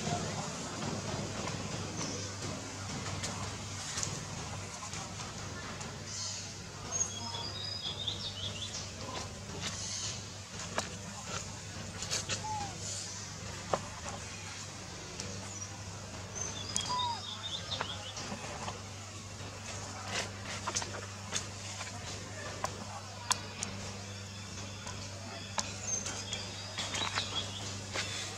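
Outdoor ambience of birds chirping now and then in short high bursts over a steady low hum, with scattered sharp clicks and a few brief squeaks.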